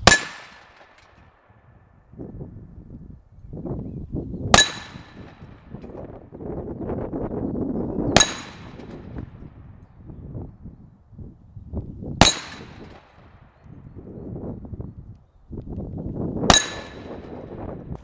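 Hanging round steel gong target struck five times by 12-gauge Tandem steel slugs, about four seconds apart. Each hit is a sharp metallic clang that rings briefly on a clear tone, the sound by which a hit is confirmed.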